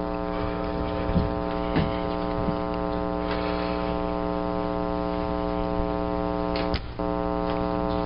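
Steady electrical hum with many overtones on the courtroom audio feed, with a couple of faint knocks in the first two seconds and a brief dropout near the end.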